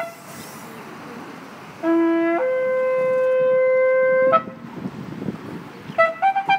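A long spiral shofar blown: the end of one blast at the very start, then about two seconds in a new blast that begins on a short low note, jumps up to a higher note held for about two seconds, and breaks upward briefly as it stops.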